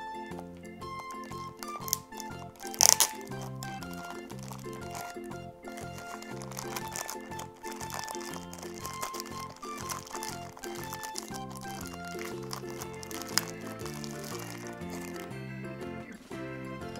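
Background music with a steady bass pulse, over the crinkling of a clear plastic bag as hands unwrap a plastic toy part. The loudest crinkle comes about three seconds in.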